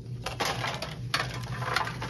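Pokémon trading cards being scooped up by hand and dropped into a metal tin, the cards rustling and rattling against the tin in a few quick handfuls.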